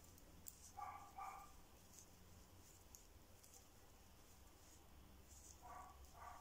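Near silence: faint high ticks of metal knitting needles working yarn, and two brief faint whine-like calls, about a second in and again near the end.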